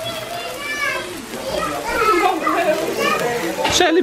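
Several people talking and exclaiming excitedly over one another, with a short sharp burst of noise near the end.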